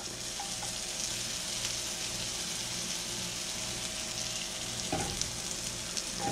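Chopped vegetables sautéing in butter in a hot 8-inch Victoria cast iron skillet: a steady sizzle.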